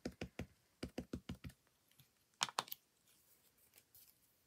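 Light rapid tapping of an ink pad dabbed onto a rubber stamp, about six taps a second for a second and a half, then two louder clacks a little past the middle.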